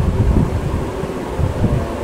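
A low, uneven background rumble with no clear pitch.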